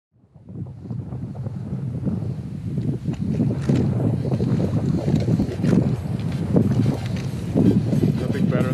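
Wind buffeting the camera microphone on an exposed summit, an irregular low rumble that fades in from silence at the start.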